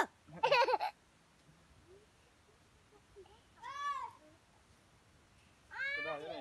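A child's short high-pitched squeals, four in all: a loud one right at the start, another straight after, a rising-and-falling one about four seconds in, and one more near the end.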